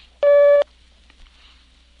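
Filmstrip advance cue: a single short electronic beep, about half a second long, signalling the projectionist to turn to the next frame.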